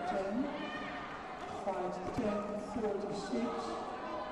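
Voices echoing in a large sports hall, with a single thud about two seconds in. A loudspeaker announcement begins near the end.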